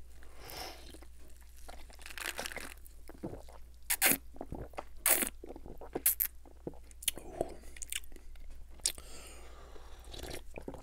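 Close-miked sipping and swallowing of carbonated soda from a small glass: soft slurps early on, then several sharp wet mouth clicks and gulps.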